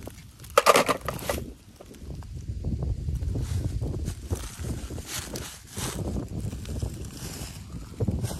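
Dry fallen leaves crunching and rustling, with a loud crunch about half a second in and scattered crackles after it, over a steady low rumble of wind on the microphone.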